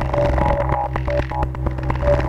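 Modular synthesizer patch played through a polyphonic envelope module: a steady low drone under short, repeating higher notes, with quick clicks throughout.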